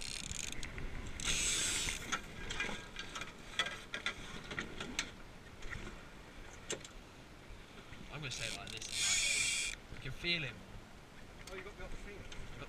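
Sounds aboard a wooden sailing dinghy under way: scattered clicks and knocks of fittings and lines, with two short hissing rushes, about a second in and again near nine seconds.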